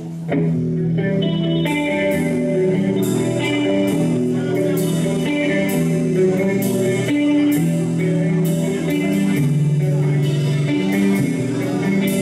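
Live rock band starting a song: an electric guitar plays a melodic intro line, and about two seconds in the drums come in with regular cymbal hits, with bass guitar underneath.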